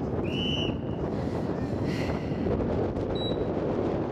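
Wind buffeting the microphone, a steady low rumble throughout. Short high-pitched tones cut through it about half a second in and again just after three seconds.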